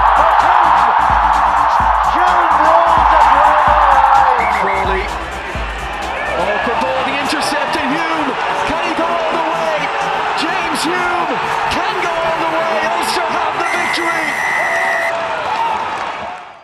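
Stadium crowd cheering loudly as a try is scored, for about the first five seconds, under background music with a steady beat and broadcast commentary. The cheer then dies down, and the music and voices carry on to the end.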